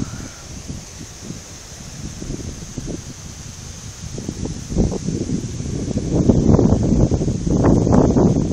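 Wind buffeting the phone's microphone, an irregular low rumble that grows louder in the second half.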